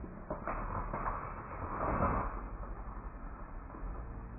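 Rustling noise of fishing line being hauled up by hand through an ice hole while playing a fish, starting about half a second in and lasting roughly two seconds, loudest near its end.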